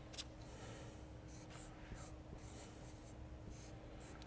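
Faint scratching strokes of writing on a board, in short irregular bursts, over a faint steady room hum.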